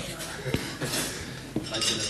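Glasses and cutlery clinking in a pub room, with a couple of sharp knocks about half a second and a second and a half in.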